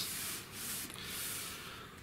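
Soft rubbing hiss of a latex-gloved hand sweeping across a wooden seat board lying on upholstery foam, fading out towards the end.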